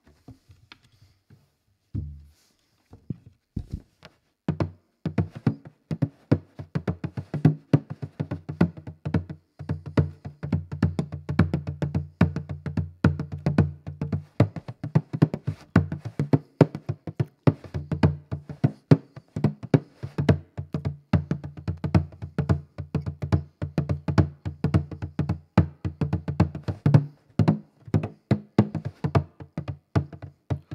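Bodhrán beaten with a tipper: a few single strokes in the first seconds, then a fast, steady rhythm of strikes with a deep drum tone under them, the lead-in to a song.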